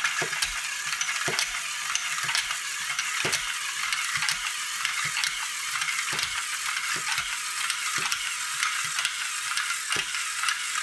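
LEGO domino-laying machine running: its electric motor and gear train whir steadily as it creeps forward. A sharp click comes about once a second as each five-brick domino is released and set down.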